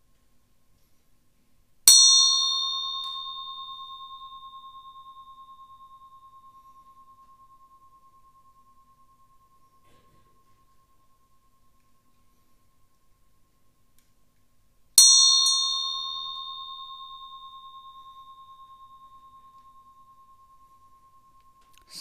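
A small bell struck twice, about thirteen seconds apart; each strike rings out in one clear high tone that fades slowly over several seconds, with a bright shimmer above it that dies away sooner.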